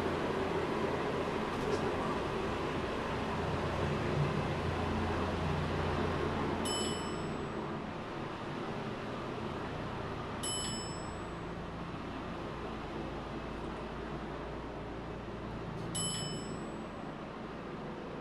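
Otis hydraulic elevator car travelling between floors: a steady low hum and rumble, easing a little partway through, with three short high electronic dings about 7, 10 and 16 seconds in as it passes floors.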